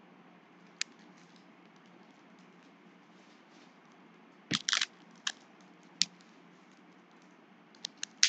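Foil trading-card packs crinkling in the hands: one short click about a second in, then a cluster of sharp crackles around the middle and a few more near the end, over faint room hiss.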